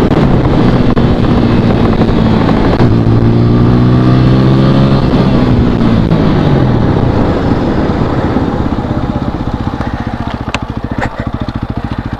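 Motorcycle engine running at high speed over heavy wind rush. About five seconds in, its note falls away as the throttle closes and the bike slows, ending at low revs.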